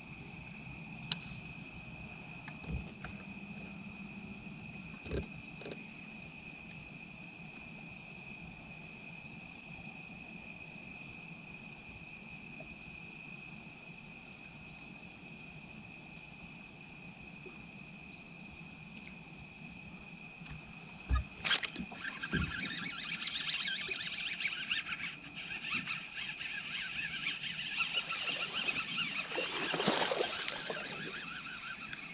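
Steady night chorus of insects and frogs: two constant shrill trills at different pitches. About two-thirds of the way through come a couple of sharp knocks, then a louder, irregular splashing and clatter that builds toward the end.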